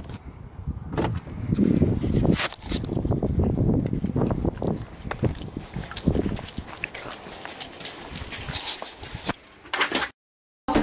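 Footsteps on pavement, with rustling and knocking from the handheld camera being carried, and a few sharper knocks near the end.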